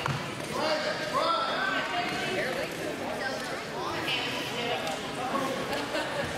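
Indistinct voices of people talking and calling out in a large, echoing gym hall, with a single dull thump at the very start.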